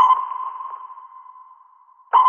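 Synthesized sonar-like electronic ping from an animated logo sting. One high tone strikes at the start and fades away over about two seconds.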